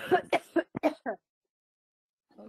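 A person with a cold coughing and clearing the throat: a run of about five quick coughs in the first second or so.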